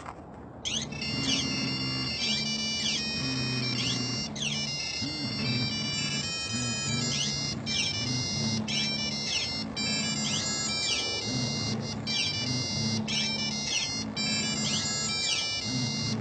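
Several mobile phones ringing at once, their electronic ringtones overlapping in repeating high beeps and rising chirps, with a low buzzing underneath. The ringing starts under a second in and carries on without a break.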